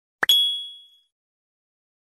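A single ding sound effect for an animated pop-up graphic: a sharp click, then a high bell-like tone that rings out and fades within about a second.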